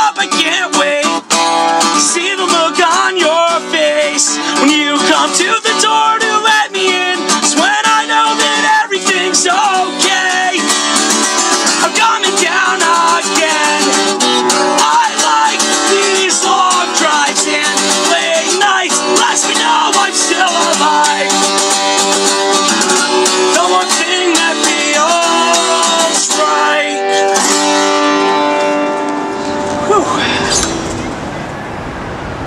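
Acoustic guitar strummed with a man singing over it. Near the end the music fades out.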